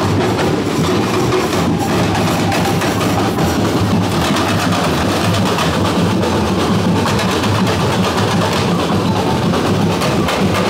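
Marching percussion band playing in the street: many drums beating a steady, continuous rhythm.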